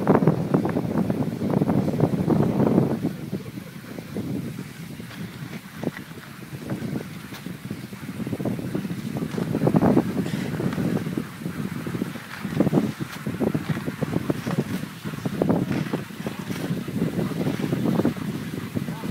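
Wind buffeting the microphone: a gusty low rumble that swells and fades, strongest in the first few seconds and again about ten seconds in.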